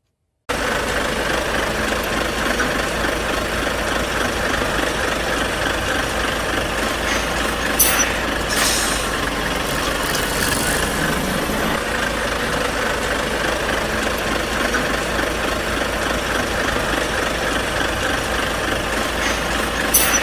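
A steady engine drone, like a heavy vehicle idling, that starts half a second in after a moment of silence. A couple of short hisses come about eight seconds in.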